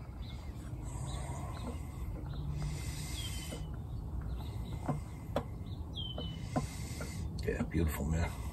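A bird calls twice, each a short whistle sliding down in pitch, about three seconds apart. A few light knocks come in the middle, over a steady low rumble.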